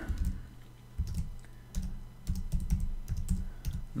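Typing on a computer keyboard: a short pause early on, then an irregular run of keystrokes entering a short word.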